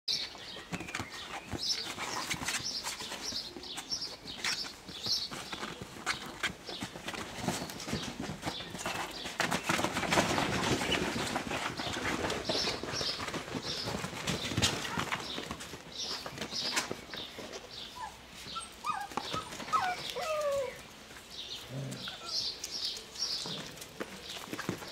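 A litter of puppies squeaking and whining over the scuffling and rustling of their play, with short high squeaks repeating throughout and a few rising-and-falling whines a little before the end.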